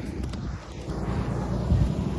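Wind buffeting the microphone outdoors: a low, uneven noise with no distinct events.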